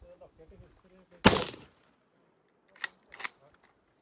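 A single loud rifle shot in .308 Winchester from a Troy PAR pump-action rifle about a second in, with a brief fading tail. Two shorter, sharp clicks follow about a second and a half later, less than half a second apart.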